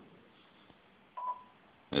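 A single short electronic beep: one steady mid-pitched tone lasting about a third of a second, a little past halfway through, against near silence.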